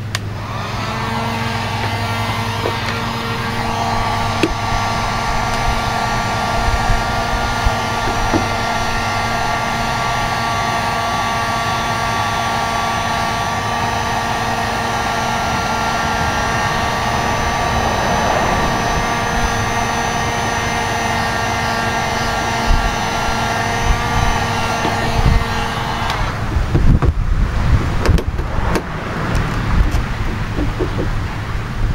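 Master 1500-watt heat gun running steadily, its fan blowing with a motor hum, heating a vinyl decal on the car's paint. It is switched off about 26 seconds in, leaving wind on the microphone.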